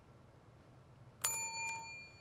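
A single bell-like electronic ding from a quiz-bowl buzzer system, about a second in, ringing and fading in under a second: the sign of a contestant buzzing in to answer. Before it there is only faint room hiss.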